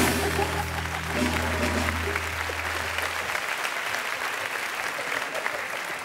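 Studio audience applauding and laughing, over a short music sting from the band: a held low chord that stops about three seconds in. The crowd noise slowly dies down toward the end.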